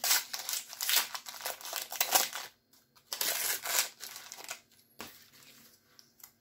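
A foil trading-card pack being torn open and its wrapper crinkled in the hands, in two spells of crackling, the second tailing off fainter. A single short click follows near the end.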